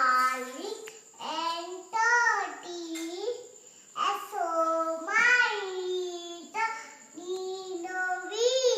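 A four-year-old girl singing a rhyme unaccompanied, in short phrases with held notes and brief pauses between them.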